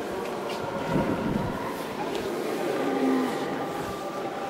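Murmur of visitors inside a large, echoing church: low voices and movement over a faint steady hum, with a soft thump about a second in.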